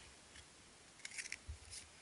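Faint rustling and clicking of cardboard Panini points cards being picked up off a table and gathered into a stack in the hand, with a soft thump about a second and a half in.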